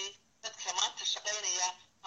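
Speech only: a man talking, with a brief pause just after the start.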